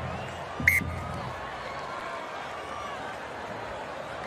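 Stadium crowd noise, a steady murmur with faint calls, with a short broadcast transition sound effect about half a second in as the replay graphic wipes across.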